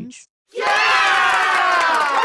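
A loud, dense cacophony of many voices at once, starting suddenly about half a second in after a brief silence, like a crowd.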